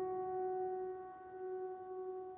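The final held note of the background music fading out, a single steady tone with its overtones slowly dying away.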